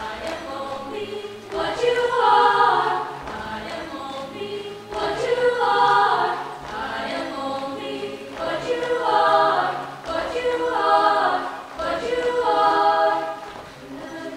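Mixed-voice high school chamber choir singing a cappella, its phrases swelling loud and falling back every few seconds.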